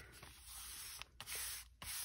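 A hand rubbing paper flat onto a journal page, a few strokes of soft paper-on-paper friction.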